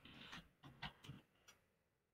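Faint typing on a computer keyboard: a quick run of soft keystrokes that thins out after about a second and a half.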